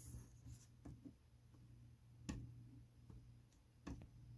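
Near silence with a low steady hum and a few faint clicks and taps from a plastic action figure being handled and posed, the clearest a little past two seconds in.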